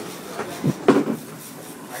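A few sharp knocks and clatter of fishing gear handled in a boat's cockpit, the loudest about a second in, over a steady background hiss.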